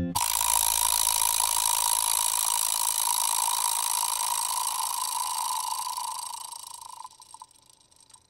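A steady mechanical rattling whir starts abruptly, fades out after about six seconds, and ends in a few separate clicks.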